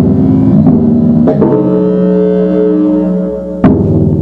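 Improvised percussion and electronics: mallet and stick strikes on drums and cymbal over a bed of sustained, ringing low pitched tones. Sharp hits land at the start, about a second and a half in, and near the end, each followed by ringing.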